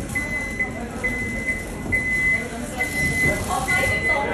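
An electronic warning beeper at an airport gate sounds a single high beep again and again, a little under once a second, over crowd chatter.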